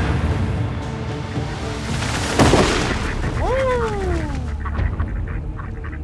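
A single pump-action shotgun shot about two and a half seconds in, sharp and loud, followed a second later by a drawn-out falling tone.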